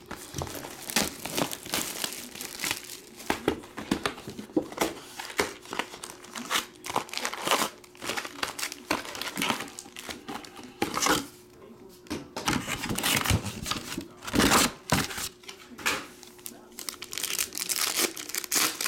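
Foil trading-card pack wrappers crinkling and tearing as packs are pulled from a cardboard hobby box and handled, in a rapid, irregular crackle. A louder crunch comes about three-quarters of the way through.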